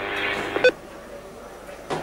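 Team radio channel open with a steady hum, cut off about two-thirds of a second in by a short beep and click as the transmission ends; a faint click near the end.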